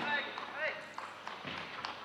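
A short spoken call in a squash arena between points, followed by a few light taps.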